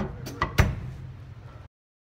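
Drum kit struck four times in quick succession, the last and loudest stroke a little over half a second in, over a low steady hum. The sound cuts off suddenly near the end.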